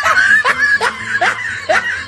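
Laughter following a joke's punchline: a run of short laughs, about two to three a second, each rising in pitch.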